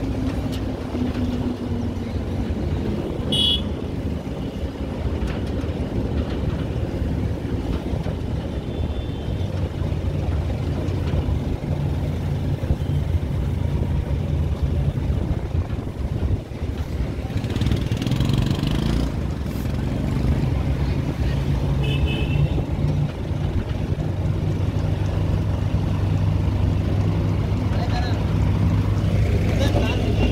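The engine of a moving vehicle running steadily under road and wind noise while driving. A few short, high-pitched toots are heard, about three seconds in, near nine seconds and near twenty-two seconds.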